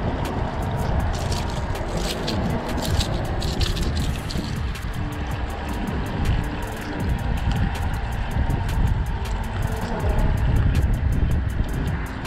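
Steady low rumble of road traffic on the bridge overhead, mixed with wind on the microphone, with many small clicks and taps from handling the fish and its hooked lure.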